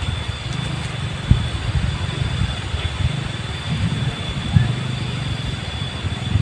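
A steady low rumble with two short dull thumps, one about a second in and one near the end.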